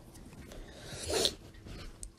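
A short, breathy huff about a second in, over faint room noise.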